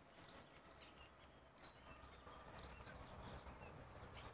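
Near silence with a few faint, high bird chirps scattered through it.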